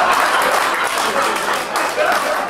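Audience applauding: many people clapping at once, steady and loud.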